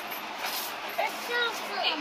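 Speech only: a short spoken "okay" about a second in, over a steady background hiss.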